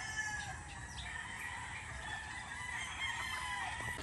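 Several gamecocks crowing faintly, their long drawn-out crows overlapping.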